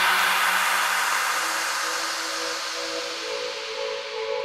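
Electronic music breakdown with no beat: a white-noise sweep slowly fades away over held synthesizer tones.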